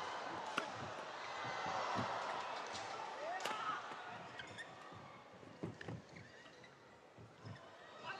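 Arena crowd murmur that swells about two seconds in and then fades away, with sharp racket strikes on a shuttlecock during a doubles rally, the clearest about three and a half seconds in and fainter ones near the end.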